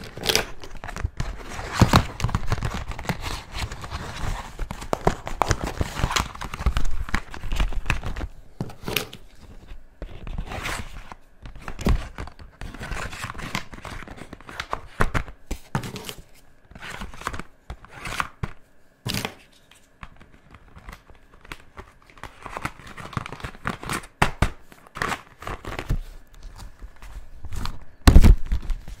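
Clear plastic packaging and a cardboard pen holder crinkling and rustling as they are handled, with irregular clicks and knocks of felt-tip pens being slid back into their holder.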